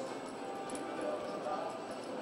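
Indoor arena ambience of background music and indistinct voices, with soft hoofbeats of a horse loping on arena dirt.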